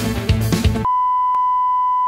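Background music with a drum beat that cuts off about a second in, replaced by one steady, high electronic beep, a pure tone held at an even level, of the kind an editor lays over a black screen as a bleep.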